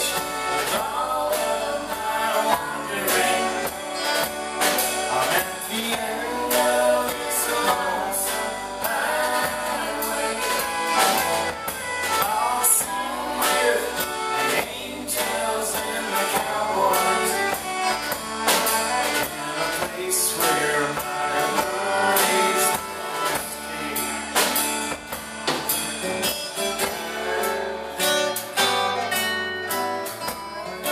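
Live country band playing an instrumental passage between verses: strummed acoustic guitar, electric bass and drum kit, with a fiddle carrying the melody.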